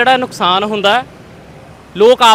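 A man's voice narrating in Punjabi for about the first second, then a pause of about a second with only faint street background noise.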